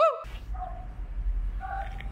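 A dog gives one short, rising yip at the start, followed by a few faint, short calls over a low, steady background.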